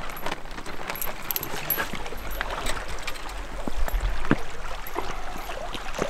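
Fishing tackle being handled: scattered light clicks and small metallic clinks from the spinning reel and lure, over a low rumble of wind on the microphone.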